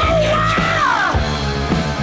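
Rock band recording: a high lead line slides and bends in pitch over bass and drums and breaks off about a second in, after which an even, repeating rhythm carries on.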